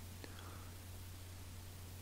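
Quiet pause: a faint steady low hum with light hiss, and one faint click about a quarter second in.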